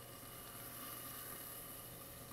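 Faint, steady sizzle of food frying in hot pans on gas burners, scallion whites sautéing in olive oil and chicken breasts searing, over a low steady hum.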